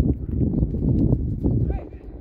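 Indistinct shouts and calls from players on a football pitch, with scattered short knocks.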